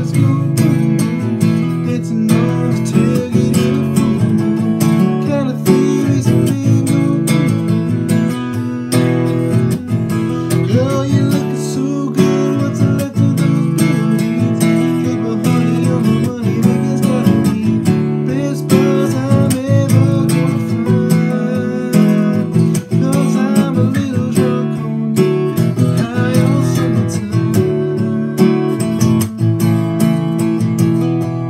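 Taylor GS Mini acoustic guitar, capoed, strummed continuously in quick down-up strokes through a G, C, D and Em chord progression.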